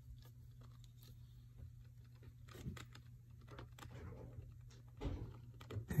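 Faint clicks and scraping from a wooden folding guitar stand being handled as one of its legs is screwed together, with a louder knock about five seconds in.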